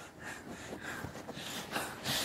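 A hand raking and scratching through shag carpet pile, giving faint, irregular rustling scratches.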